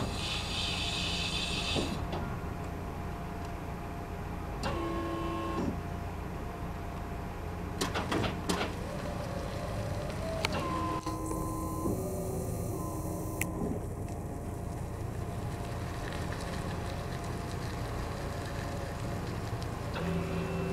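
ABM Orion 1000 electric personnel lift driving: its electric drive motors hum and whine steadily, the whine stepping up and down in pitch several times, with short spells of hiss near the start and about halfway.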